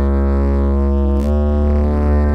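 Background music: sustained synthesizer chords over a deep, steady bass, the chord changing a little over a second in.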